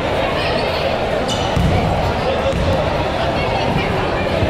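A basketball bounced on a gym's hardwood floor as a player dribbles at the free-throw line, over a steady chatter of voices that echoes in the large gym.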